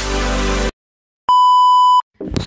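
Electronic intro music cuts off, and after about half a second of silence a single steady electronic beep, like a TV test tone, sounds at full loudness and stops abruptly.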